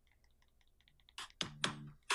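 Faint computer keyboard typing and clicking, a run of light ticks, followed near the end by a brief voice sound.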